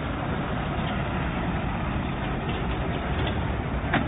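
Steady street traffic noise, with a bus running close by. A short click comes near the end.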